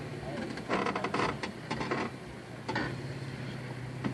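Toyota FJ Cruiser's V6 engine running low and steady as the truck creeps over rock ledges, with a short burst of crunching and clicks about a second in.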